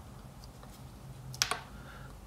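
Faint room tone with one brief, sharp double click about one and a half seconds in.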